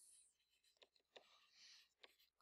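Near silence, with a few faint ticks and a soft scratch of a stylus writing on a tablet screen.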